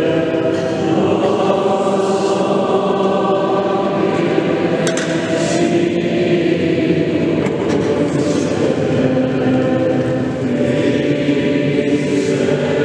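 Choir singing a slow hymn during Mass, in long held chords.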